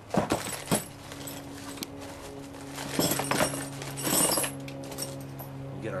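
Metal seat-belt hardware being handled: the retractor and a steel L-bracket clink and rattle in short bursts near the start, about three seconds in and about four seconds in, over a steady low hum.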